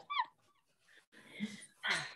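A short high-pitched whine right at the start, then soft breathy sounds about a second later.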